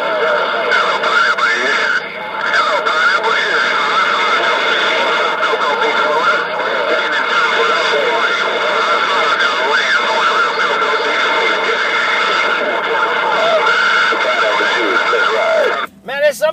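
Galaxy CB radio's speaker receiving distant skip: several voices talking over one another, garbled by static, with steady whistling tones beneath. It cuts out suddenly near the end.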